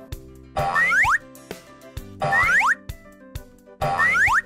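Children's cartoon music with two springy, rising boing sound effects for jumps, the first about half a second in and the second a little past two seconds.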